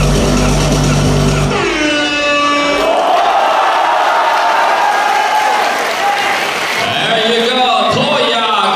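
Electronic dance music ends about one and a half seconds in with a falling sweep, followed by audience applause and cheering. A man's voice comes in over the crowd near the end.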